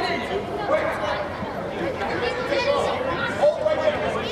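Many overlapping voices chattering and calling out, with no single clear speaker, echoing in a large indoor sports dome; one voice rises louder about three and a half seconds in.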